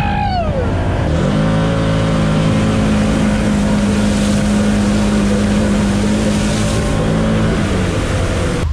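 Can-Am Maverick side-by-side's engine revving up and back down. From about a second in it pulls at a steady high pitch under throttle, holding until near the end, with a hiss of dirt and debris spraying against the machine.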